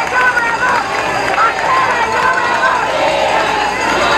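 Large crowd of rally supporters cheering and shouting, many voices at once, steady and loud.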